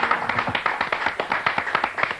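Hand clapping from a small group of people: many quick, overlapping claps.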